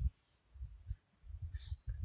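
Low, uneven rumble of wind buffeting the microphone, with a short scratch of a felt-tip marker on flip-chart paper near the end.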